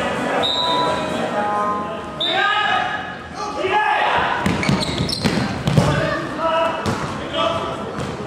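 Indoor football match in a sports hall: a ball kicked and bouncing on the hard hall floor, several thuds in the middle, under players' shouts and crowd voices echoing in the hall.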